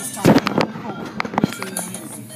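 Automatic car wash brushes and water jets hitting the car body, heard from inside the car: a run of sharp slaps and thuds, the loudest about a quarter second in.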